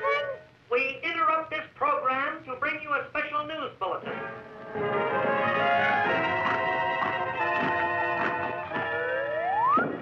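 A high, chattering voice for about three seconds that the recogniser wrote no words for, then cartoon underscore music with held notes, ending in a quick rising slide-whistle-like glide.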